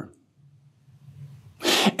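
A man's sharp, quick intake of breath about a second and a half in, after a short quiet pause with only a faint low hum.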